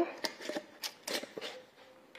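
Metal screw lid being twisted onto a glass jar: a handful of light clicks and scrapes in the first second and a half, then near quiet.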